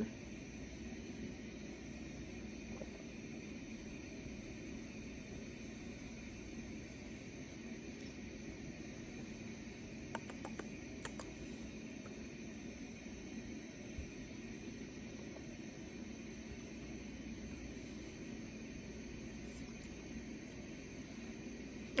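Quiet room tone: a steady low hum, with a couple of faint clicks about ten seconds in.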